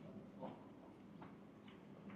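Near silence: quiet room tone with three faint short clicks.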